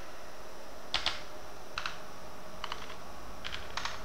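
Typing on a computer keyboard: a few separate keystrokes spaced out over several seconds, as characters are entered one at a time.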